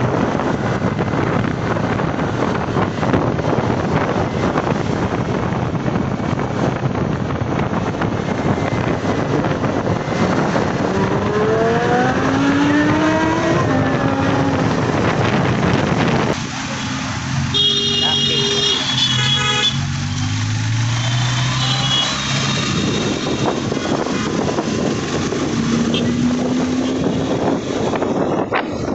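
Roadside traffic noise with people talking. About eleven seconds in, a vehicle engine rises in pitch as it accelerates, and a few seconds later brief high-pitched tones sound.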